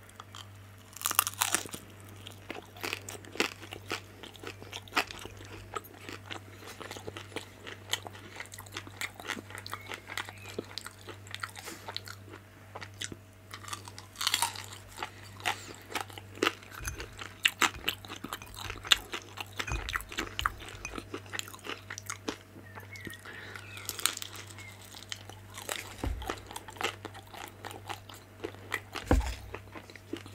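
Close-miked biting and chewing of crunchy pan-fried vegetable dumplings: the crisp fried skins crackle in quick sharp crunches, with louder bites about a second in, around the middle and again later. A low steady hum runs underneath.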